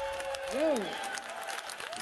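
Audience applauding with scattered claps right after a live rock song ends, with one voice whooping about half a second in.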